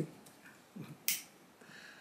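A single short, sharp click about a second in, a pocket lighter being struck, with a brief low murmur of a voice just before it.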